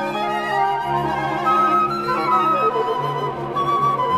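Mixed chamber ensemble playing a slow, contemporary classical piece: a high melody line in long held notes enters about a second and a half in, over low sustained tones.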